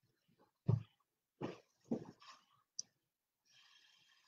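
Three short puffs of breath blown through a straw onto wet acrylic paint, the first the loudest, followed by a single small click.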